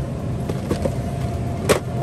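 Steady low hum of a supermarket's open freezer case, with a faint steady whine over it. A short sharp knock comes near the end.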